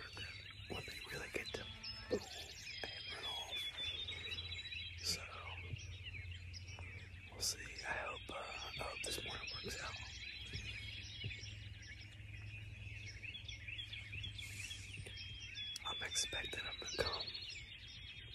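Songbirds singing, many short chirps and calls, with a trilled song of quickly repeated notes heard twice, a couple of seconds in and again near the end. A low steady hum runs underneath.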